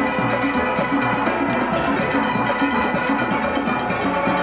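Steel band playing: many steelpans sounding together in a continuous rhythmic tune, with low bass-pan notes repeating under the higher pans.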